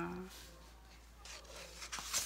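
Faint rubbing and sliding of paper notebooks being handled: a pocket notebook's pages and cover are moved against an open dot-grid notebook.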